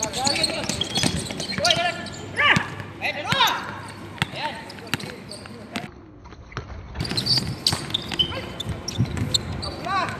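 A basketball bouncing on an outdoor hard court in a pickup game, with sharp bounces and footfalls through the play and voices in the background.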